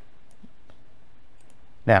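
A few faint computer mouse clicks over a steady low background hiss, with a voice starting near the end.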